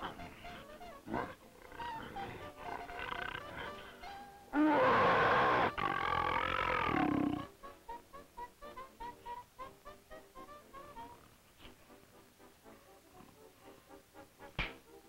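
Cartoon background music, broken about four and a half seconds in by a loud cartoon lion roar that lasts about three seconds, with a brief break partway through.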